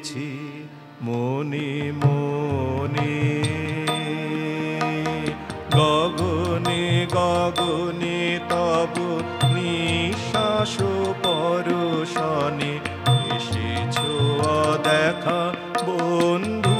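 A man singing an Indian devotional-style song while accompanying himself on a harmonium. The harmonium holds a steady drone under the sustained, ornamented vocal line, and a low drum beat joins in about five seconds in.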